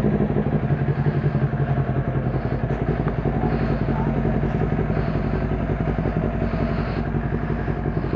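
Kawasaki Ninja 400's parallel-twin engine idling steadily, just after being started.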